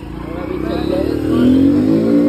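Motor vehicle in street traffic giving a pitched, drawn-out tone that swells over about a second and a half, then holds loud near the end.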